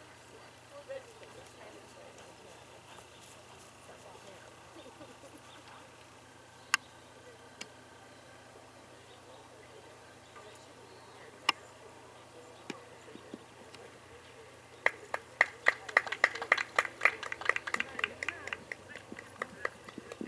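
A few spectators clapping briefly at the end of a dressage test, starting about three-quarters of the way in, over a quiet outdoor background with two lone sharp clicks before it.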